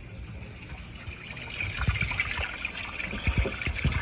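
Water trickling and splashing steadily in an aquarium-style fish rearing tank, growing louder about a second and a half in, with a few low bumps.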